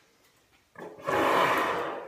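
A silver bell-front marching brass horn blown in one loud, rough blast lasting about a second. It starts a little under a second in and fades near the end.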